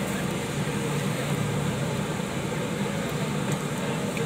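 Steady background hum and hiss at a grill stall, even throughout, with no distinct knocks or calls.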